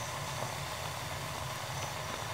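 Pot of water at a steady boil on a stove, a low, even bubbling rumble. It is boiling at about 198 °F, 14 degrees below the sea-level boiling point, because of the lower air pressure at 7,400 ft.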